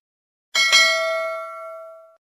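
Notification-bell 'ding' sound effect from a subscribe-button animation, marking the click on the bell icon. A bright bell chime strikes about half a second in, then rings and fades over about a second and a half.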